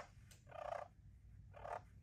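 A friction pot turkey call (a clucking and purr pot) played with a long wooden striker, making turkey talk. A sharp cluck at the start, then two short raspy notes about half a second and a second and a half in.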